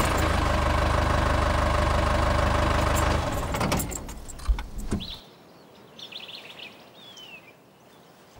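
A game-drive vehicle's engine running steadily, then fading away about three to four seconds in. Faint bird chirps follow in the quiet.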